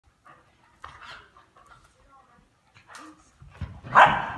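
Two whippets playing: faint scattered dog noises and short vocal sounds, growing into louder scuffling movement on carpet in the last half-second.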